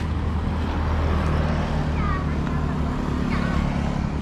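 A motor vehicle engine running with a steady low hum that grows a little louder about a second in. Short high-pitched calls, like children's voices, come in around the middle.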